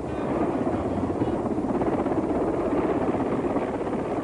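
Mil Mi-8 transport helicopter flying low and coming in to land, its main rotor giving a rapid, steady blade chop over the turbine noise.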